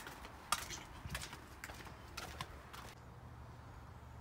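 Footsteps on a concrete walkway: a string of short, sharp steps over the first three seconds, then they stop.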